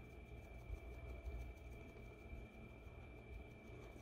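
Near silence: quiet room tone with a faint low rumble and a thin, steady high-pitched whine.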